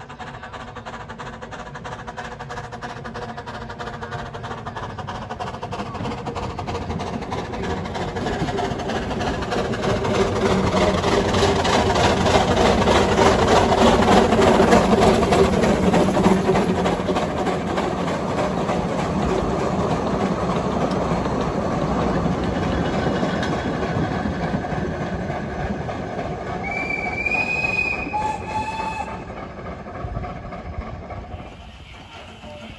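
Small 2 ft gauge steam locomotive chuffing as it approaches, growing louder until it passes close by about halfway through, with its train rattling past after it. A brief high-pitched tone sounds near the end.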